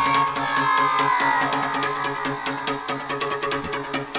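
Eurodance music playing in a DJ mix, in a stretch without the bass drum: held tones over fast, even ticking percussion.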